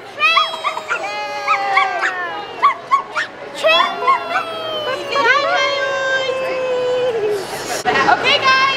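High-pitched children's voices squealing and calling among a crowd, with several long, slowly falling held cries.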